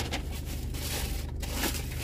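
Paper sandwich wrapper rustling and crinkling as it is pulled open by hand, in irregular bursts.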